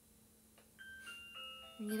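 A short electronic chime melody of clear, bell-like tones, each held briefly and stepping down in pitch, starting about a second in.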